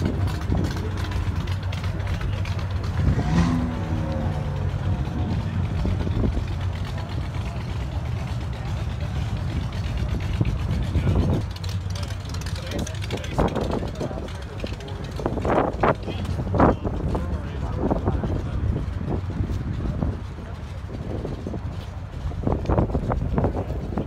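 A low, steady engine rumble from cars moving slowly past, under the chatter of a crowd. The rumble fades about halfway through, leaving mostly people talking.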